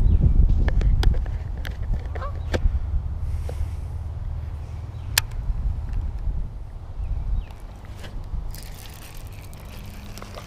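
Low rumble on a chest-mounted camera microphone, loudest at first and easing off, with scattered sharp clicks and taps from handling a baitcasting rod, reel and line while a small bass is played in. Near the end comes a hissing splash as the hooked bass thrashes at the surface.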